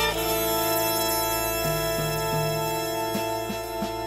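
A jazz orchestra with woodwinds and horns holding one sustained chord, while a low bass line changes notes a few times beneath it.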